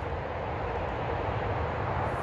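Steady low rumbling outdoor background noise, even in level, with no distinct clicks or tones.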